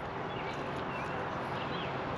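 Steady outdoor background noise with a few faint, short, high chirps.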